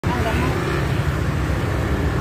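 Steady low rumble of city road traffic, with faint voices in the background near the start.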